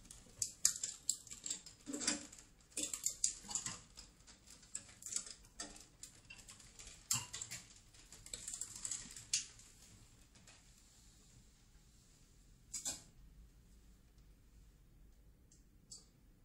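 Sealer film being threaded by hand through a cup-sealing machine's rollers: irregular light clicks and rustling of the plastic film for about ten seconds, then mostly quiet with one more click a few seconds before the end.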